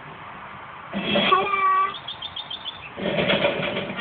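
Sound effects and music from TV production-company logos playing back: a wavering cry about a second long begins about a second in, then five quick high chirps, and music starts about three seconds in.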